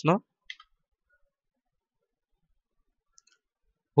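The tail end of a spoken word, then near silence with one short faint click about half a second in and a tiny tick near the end.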